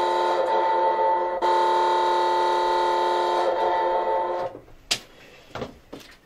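A horn from a red beacon light on the desk, a loud, steady blare of several pitches at once, cutting off suddenly about four and a half seconds in. A sharp click follows.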